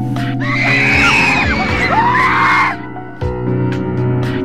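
Screaming over background music: a loud burst of several overlapping, wavering high screams lasting about two seconds, then the music carries on alone after a short dip.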